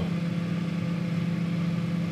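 Microwave oven running with a steady, even hum.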